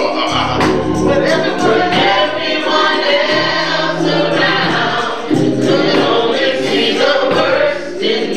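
Church praise team singing a gospel song in harmony, backed by organ, with a steady light percussive beat.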